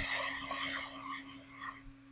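Scraping and rustling handling noise, cloth rubbing near the microphone as the recording device is shifted, fading out near the end over a steady low hum.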